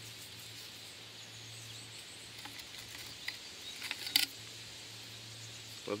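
Homemade berry picker, a plastic sewer pipe fitted with knife blades, brushing into a rosehip bush and cutting off fruit: a few faint clicks and rustles, with a sharper snap about four seconds in.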